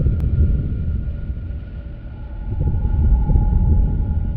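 A low, rumbling drone that dips about two seconds in and swells again, with a faint steady high tone held above it.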